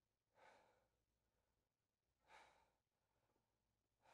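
Near silence broken by two faint, short breaths from a man, about half a second in and again just past two seconds.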